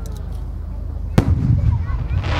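A firework aerial shell bursting with one sharp bang about a second in, followed by a low rumble as it echoes.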